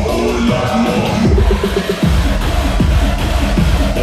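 Bass-heavy electronic dance music with a driving beat, its bass dropping out for a moment about halfway through.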